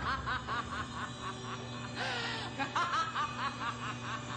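Women cackling, in quick repeated bursts of high laughter, over a low sustained music drone, with a brief breathy hiss about two seconds in.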